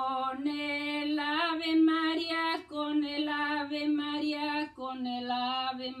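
A woman singing a Spanish alabanza (devotional hymn) unaccompanied, in long held notes, with short breaths about two and a half and four and a half seconds in.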